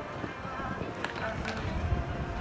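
Indistinct voices of people talking outdoors over a low background rumble, with a couple of short sharp clicks about a second in and again shortly after.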